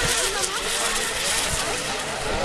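Radio-controlled racing hydroplanes running flat out across the water together, a steady high hiss of their motors and spray.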